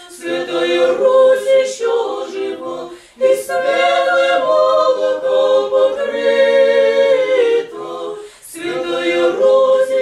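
A small mixed choir of men's and women's voices singing Russian Orthodox chant a cappella in parts. The chords are long and held, with short breaks for breath about three seconds in and again near the end.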